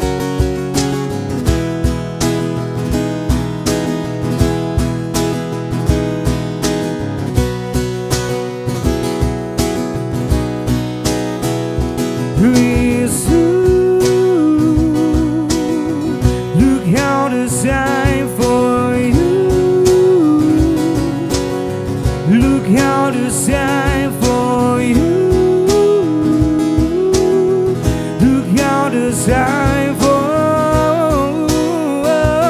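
Acoustic guitar strummed over a steady cajon beat. About twelve seconds in, a man's singing voice joins with long held notes and vibrato.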